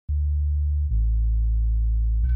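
Deep, steady electronic bass tones opening the intro music: one sustained low note, then a lower one just before a second in.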